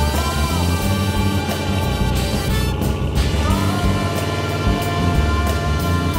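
Background music: an instrumental track with a steady beat and bass line.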